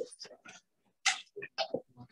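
The tail of a man's laugh, then scattered short rustles and knocks of clothing and hands against a clip-on microphone as it is taken off a jacket lapel.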